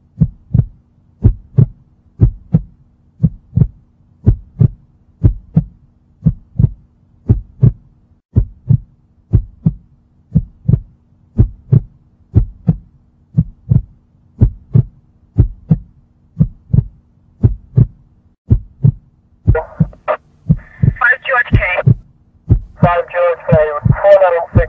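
Heartbeat sound effect in a song intro: steady lub-dub double thumps, a pair a little more than once a second, over a faint low hum. Near the end, pitched synth music comes in over the beat.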